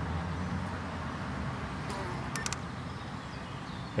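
Steady outdoor background: a low hum with a faint hiss over it, and a few faint clicks about halfway through.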